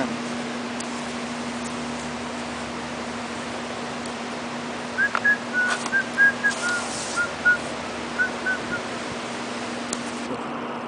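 A person whistling a short run of about a dozen brief notes that drift slightly down in pitch, starting about halfway in, over a steady low hum.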